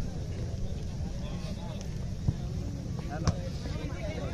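Distant voices of spectators talking at a football ground over a steady low rumble, with two short sharp knocks a second apart in the second half.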